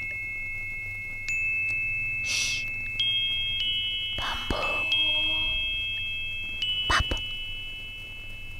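High metallic chime tones struck one after another, each one ringing on so they pile up into a sustained shimmer. There are a couple of soft breathy rushes in between, and a sharp knock about seven seconds in.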